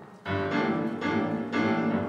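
Piano playing loud, dense chords: a heavy chord struck about a quarter second in, then re-struck several times and left ringing.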